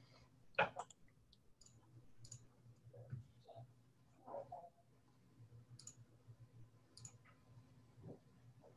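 Faint, scattered computer mouse clicks, a handful spread over several seconds, over a low steady electrical hum and room tone.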